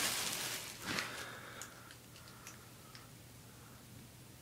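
Plastic cover sheet crinkling as it is handled, loudest in the first second, then a few faint ticks.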